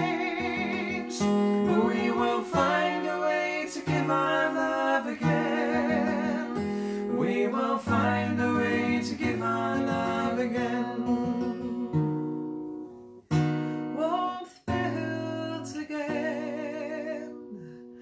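An original folk song performed live: a woman and a man singing over a strummed acoustic guitar, with some long, wavering held notes in the voice.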